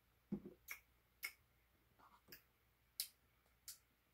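Faint lip smacks and mouth clicks from tasting a milkshake after a sip, about six short, irregularly spaced clicks in near silence.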